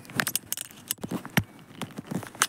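Irregular light clicks, knocks and rattles, with no engine running.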